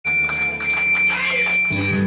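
Loud amplified live band: sustained low bass and guitar notes with a steady high-pitched whine over them for the first second or so, then a new, louder low chord coming in near the end.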